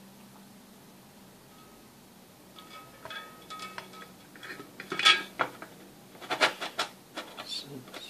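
The louvred metal case of a Slide Trans variac (variable autotransformer) is lowered over the copper winding and seated on its base, giving metal scraping and clinking. The loudest clank comes about five seconds in, followed by a few more knocks.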